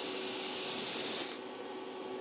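Compressed air hissing out of a plasma cutter's torch as post-flow cooling air after the cut, shutting off abruptly about a second and a half in.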